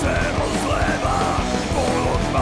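Metal song with a shouted vocal over the full band.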